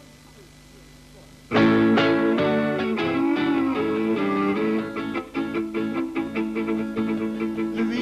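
Faint steady hum, then about a second and a half in a live instrumental introduction starts suddenly and loud: strummed acoustic guitar with a bowed fiddle holding sustained notes.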